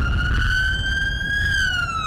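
Police car siren wailing in one slow sweep, rising in pitch to a peak about one and a half seconds in, then falling, over a low rumble.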